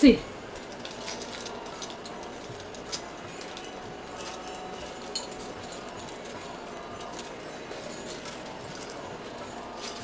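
Faint steady background noise with a few soft, isolated clicks.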